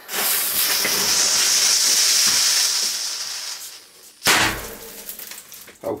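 A firecracker's lit fuse hissing steadily for about three and a half seconds and fading, then the firecracker going off with a single sharp bang just over four seconds in.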